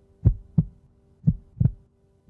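Heartbeat sound effect: two double 'lub-dub' thumps about a second apart, over a faint steady hum.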